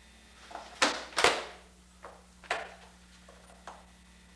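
Knocks and thumps of a skateboard being handled and stepped onto on carpet: two loud knocks close together about a second in, and two lighter ones later. A steady low hum runs underneath.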